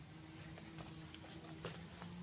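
Quiet, with a few faint footsteps on dry leaf litter and a faint steady hum underneath.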